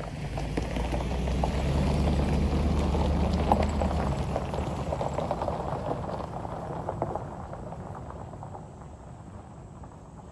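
Vehicles driving past on a gravel road: engine rumble with tyres crunching over loose gravel, loudest a few seconds in, then fading as they drive off into the distance.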